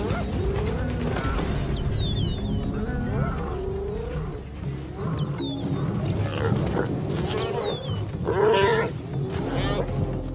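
Spotted hyenas calling and growling as they attack a topi: repeated rising and falling cries, with the loudest, harshest burst of calling about eight and a half seconds in. A background music bed runs underneath.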